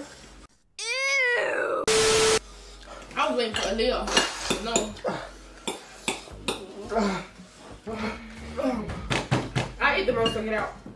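Edited-in sound effects: about a second of rapidly repeating warbling pitch sweeps, then a short buzzer-like tone over a hiss. After that, forks clink and scrape on a glass bowl under mumbled voices.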